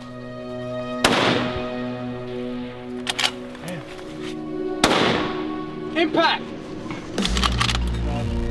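Two centerfire precision rifle shots, about a second in and about four seconds later, each a sharp crack trailing off into echo, over background music with sustained tones.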